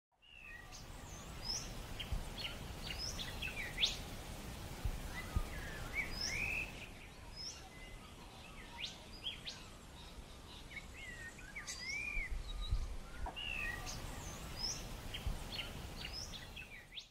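Several birds calling and singing: many short whistled chirps and slurred notes, some rising and some falling, over a low background rumble. The calls thin out for a few seconds in the middle.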